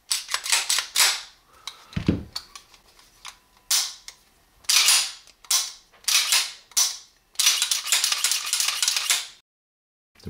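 Sharp metallic clicks and rattles from handling steel 1911 pistols: several separate clicks, then a run of rapid clicking about seven seconds in that lasts a couple of seconds and stops abruptly.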